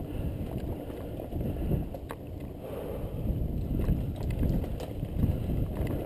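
Mountain bike rolling down a rocky dirt trail: a continuous rumble of the tyres over dirt and loose stones, with a few sharp rattles from the bike.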